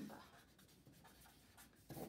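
Faint scratching of a pen writing on a paper envelope, in short light strokes.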